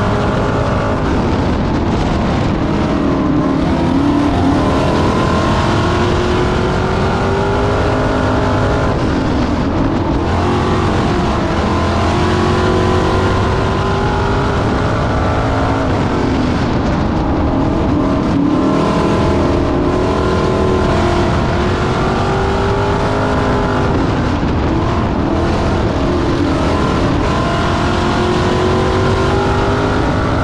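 Dirt-track stock car's engine heard from inside the cockpit, running hard under load. It rises and falls in pitch every eight or nine seconds as the car accelerates down the straights and lifts for the turns on each lap.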